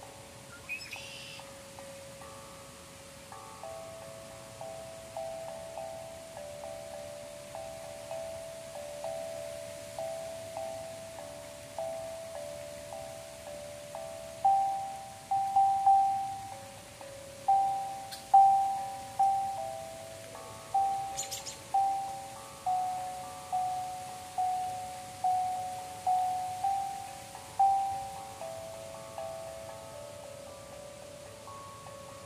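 Singing bowls struck in turn with a wooden mallet, each note ringing on under the next, several pitches in a slow repeating pattern. The strikes come about once a second and grow much louder about halfway through.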